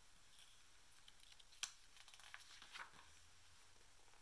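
Near silence, with faint rustles of a picture book's paper page being turned and one short sharp tick about one and a half seconds in.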